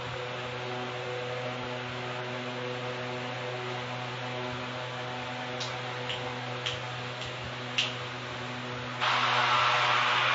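Steady electrical hum with hiss, and a few faint clicks between about six and eight seconds in. About a second before the end a louder noise comes in and holds.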